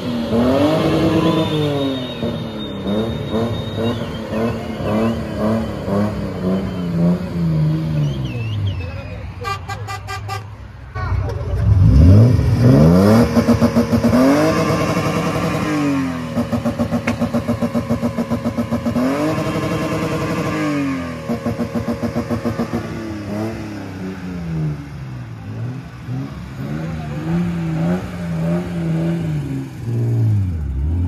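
BMW E30's engine being revved hard while stationary, its pitch climbing and falling again and again. Several times it is held flat at the top with a fast stutter, typical of bouncing off the rev limiter. A short pulsing beep sounds about ten seconds in.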